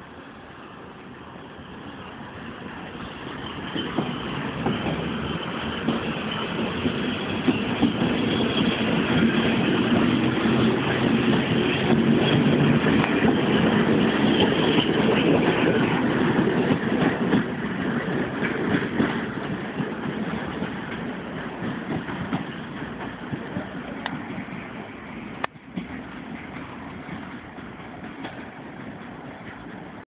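EN57 electric multiple unit pulling out and passing close by: its running noise builds, is loudest after about ten seconds, then fades away as the train leaves.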